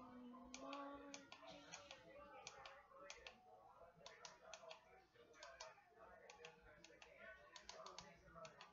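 Faint, irregular clicking of the small mode and set buttons on a Superman-figure digital clock, pressed over and over while setting its date and time.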